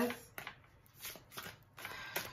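A deck of tarot cards being shuffled by hand: a run of soft, uneven card taps and slides, several a second.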